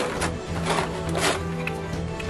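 Thin clear plastic packaging tray crinkling in three short rustles as a toy is lifted out of it, over steady background music.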